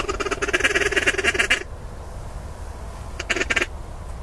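Duck call blown in fast chattering runs, a long run of about a second and a half, then a short one near the end, to draw circling ducks in.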